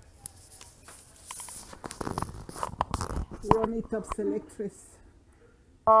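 Close rustling and clicking handling noise on the microphone, with a few spoken words. Just before the end a keyboard-led music track cuts in abruptly and loud.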